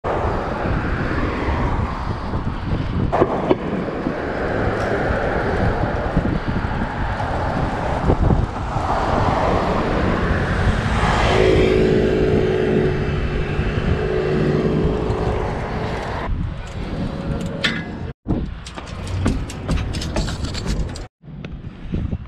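Wind rushing over the microphone of a camera on a moving bicycle, with street traffic; a motor vehicle's engine hum rises about halfway through. Near the end the sound cuts abruptly twice, with a run of sharp clicks between the cuts.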